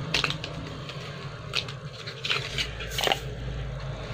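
The small paper box of a liquid matte lipstick being opened by hand: a few short crinkles and clicks of the packaging, the loudest about three seconds in, over a low background hum.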